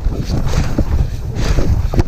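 Wind rushing over the microphone of an action camera on a downhill mountain bike at speed, mixed with tyre noise on the dirt trail and a steady stream of knocks and rattles from the bike over rough ground.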